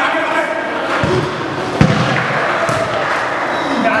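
A ball thudding during indoor mini-football play: two sharp thuds, about one second in and a louder one just before two seconds, over players' voices and the running noise of the game.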